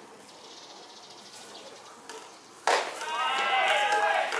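A pitched baseball smacking into the catcher's mitt with one sharp pop more than two and a half seconds in, then loud drawn-out shouted calls from voices at the field.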